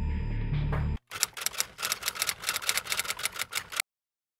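Dark background music with a low drone cuts off about a second in. A typewriter sound effect follows: rapid key clacks, about seven a second, for nearly three seconds, stopping abruptly just before the end.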